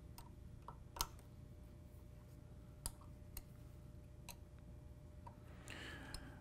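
Sparse small metal clicks and ticks of an Allen wrench seating in and turning socket-head screws as a bracket is snugged down, the sharpest click about a second in and two more near the middle.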